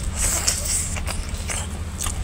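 Close-up mouth sounds of eating rice and chicken curry by hand: a short wet slurping noise as a handful goes into the mouth in the first second, then a few chewing smacks.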